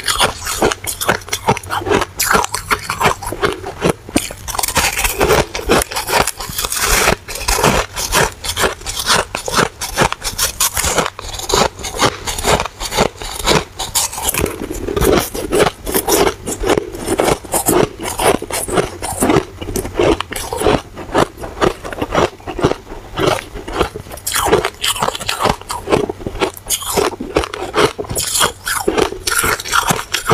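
A person biting and chewing packed, snow-like white ice close to the microphone: a continuous run of loud, soft crunches, several each second.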